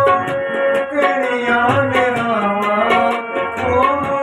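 Tabla played in a steady rhythm, accompanying a singer whose voice glides up and down over a steady held note.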